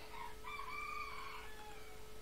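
A rooster crowing faintly in the background: one drawn-out call that falls in pitch at the end.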